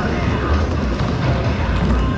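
Skateboard wheels rolling across a wooden bowl, a low steady rumble that swells about half a second in.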